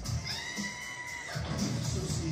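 Movie trailer soundtrack played through a TV speaker: music with a steady beat, with a high cry that rises in pitch and holds for about a second near the start.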